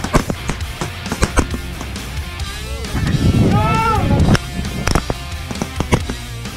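Background rock music with guitar and sharp drum hits, and a singing voice about three to four seconds in.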